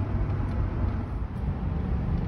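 Steady low rumble of a truck driving, road and engine noise heard from inside the cab.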